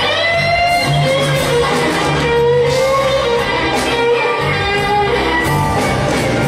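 Live blues band playing a slow blues, an electric lead guitar sliding through bent single notes over steady bass.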